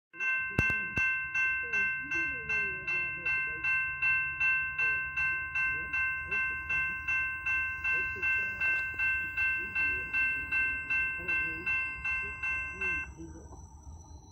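Railroad grade-crossing warning bell ringing in a steady rhythm of about two and a half strokes a second, then stopping about 13 seconds in. There is a sharp click just after the start.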